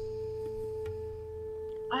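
Background meditation music holding one steady, sustained tone, over a faint low hum.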